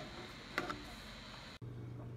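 A faint click or two of steel diagonal cutters against small 3D-printed plastic adapters, over quiet room noise. About one and a half seconds in, the background switches abruptly to a steady low hum.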